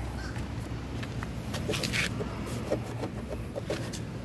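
Steady low outdoor rumble, with a few faint clicks and short high blips in the second half.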